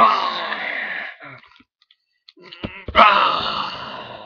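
A person's voice letting out two drawn-out moaning cries, each about a second and a half long, with a gap of nearly two seconds between them. A couple of sharp knocks come just before the second cry.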